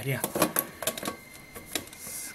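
Irregular metallic clicks and clinks from a tin coin bank being handled as a hand-held can opener is set against its lid rim; the can is full of coins.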